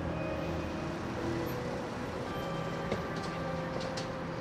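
Steady low rumble of city street ambience, with a few faint held tones over it and a couple of light clicks near the end.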